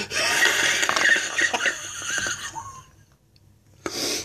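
A man's long, hoarse, wheezing vocal noise for about two and a half seconds, then quiet.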